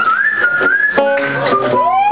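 Live band music with guitar, a whistled melody line gliding up and holding in the first second, then further pitched phrases near the end.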